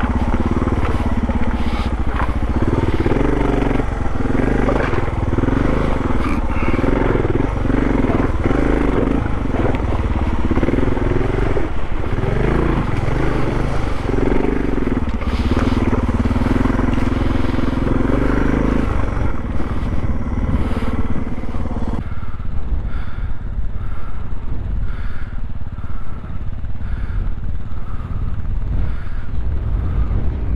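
Adventure motorcycle engine running as the bike rides slowly over a stony riverbed, its speed rising and falling, with stones knocking under the tyres. About two-thirds of the way through, the engine sound stops abruptly and a quieter, thinner background takes over.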